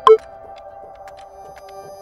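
Outro background music: sustained electronic chords, with a loud ping-like accent note right at the start.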